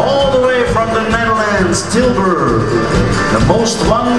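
Live country band playing, with a man singing lead at the microphone over guitar, bass and drums.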